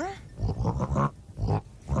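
A pig-shaped squeeze instrument, a stuffed pig, being squeezed to give two low, oinking honks, the second one shorter. It is played as comic incidental music.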